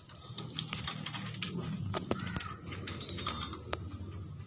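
A chained dog moving about on a metal folding chair, with irregular sharp clicks and rattles of chain and chair over a low steady hum.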